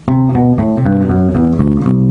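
Electric bass guitar playing the C Lydian scale pattern (C Lydian as the mode of G major): a quick run of about eight plucked notes, the last one held.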